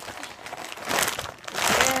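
Clear plastic packaging bag crinkling as a corset is pulled out of it, in a few rustling bursts, the loudest near the end.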